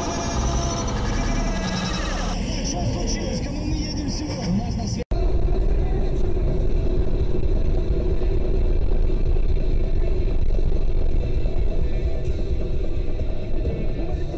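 Car dashcam audio: steady engine and road noise from inside a moving car, after an abrupt cut about five seconds in. Before the cut, people talk over traffic noise.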